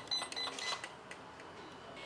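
Brushless ESC power-up beeps on a YiKong RC off-road truck: a few short, high electronic tones in the first second as the speed controller and motor switch on.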